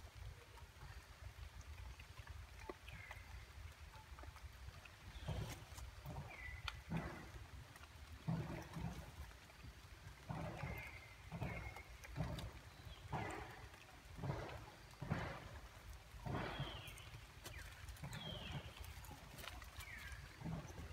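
Rustling and soft steps in wet leaves and undergrowth, about one a second from about five seconds in, over a low rumble. A few short high chirps are scattered through.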